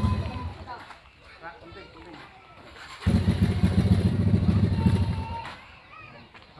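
Motor scooter engine running with a steady low exhaust note that dies away just after the start. About three seconds in it comes on again suddenly, runs for about two and a half seconds, then fades out.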